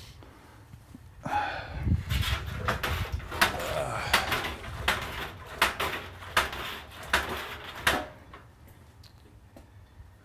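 Clinks and knocks of stainless brewing equipment being handled: a run of sharp metallic clicks and knocks from about a second in until about eight seconds, then only low background.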